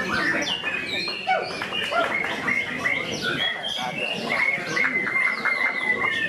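White-rumped shama (murai batu) singing a varied run of whistled notes, sliding up and down. About four seconds in it breaks into a quick string of repeated notes.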